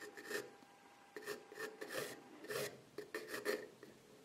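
Flat carpenter's pencil drawing on a wooden board: short scratchy strokes of the lead across the grain, coming in quick irregular runs.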